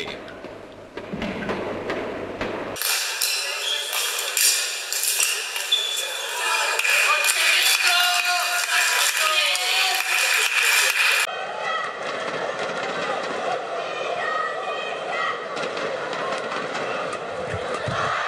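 Badminton play in a sports hall, with sharp shuttlecock hits and short squeaks, then the arena sound of a televised badminton match.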